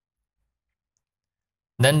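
Complete silence with no room tone, then a narrating voice begins speaking near the end.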